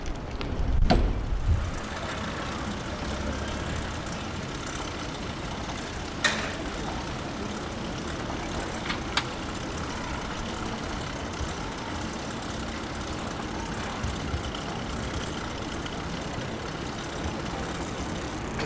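Steady street noise of a bicycle ride through a city, with a low rumble at the start. Sharp clicks come about a second in, around six seconds and around nine seconds.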